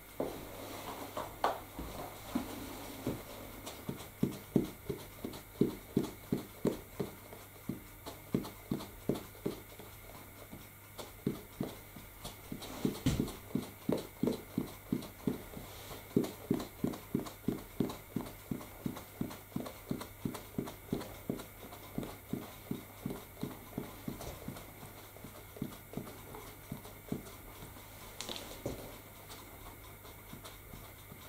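Plastic puffer bottle of static grass fibres squeezed over and over in quick, even strokes, about two to three puffs a second, puffing grass onto a model-railway hillside. The rhythm pauses briefly near the middle, with one louder knock.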